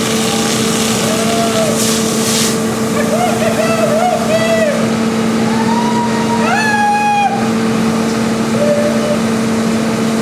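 Fire engine's pump running with a steady, even drone under the rushing hiss of water jets from the hoses. Shouted voices break in twice, a few seconds in and again about seven seconds in.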